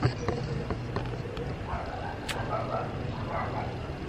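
A camera being handled and repositioned: a few light clicks and knocks over low background noise.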